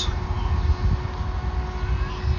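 Radio-controlled model airplane's motor running with a faint, steady hum, over a low rumble.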